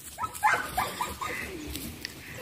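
Dog yipping and whining: a quick string of short, falling calls in the first second, then a lower drawn-out whine.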